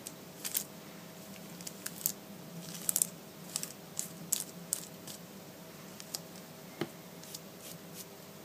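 Flat paintbrush stroking acrylic paint onto thin crackly tissue paper: a quiet run of short scratchy brush strokes and paper crinkles, with one sharper tap near the end, over a faint steady hum.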